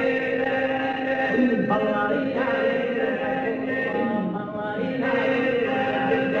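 Sardinian canto a tenore: a male vocal quartet singing a boghe 'e ballu (dance song), with voices holding a steady drone chord under a lead voice. The chord shifts in pitch twice between held phrases.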